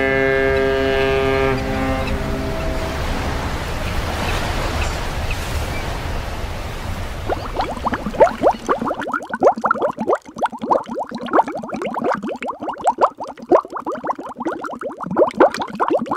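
Sound effects: a ship's horn blast that stops about a second and a half in, then a wash of sea waves, then from about seven seconds in a rapid stream of underwater bubbles, each a short rising blip.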